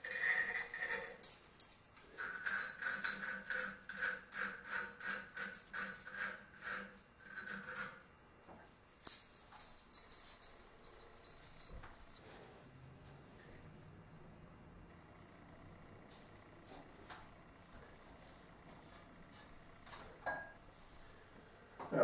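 Metal rings being twisted off a chandelier's sockets: a run of metallic rasping and jingling for the first eight seconds or so. After that there is only near quiet with a few faint knocks.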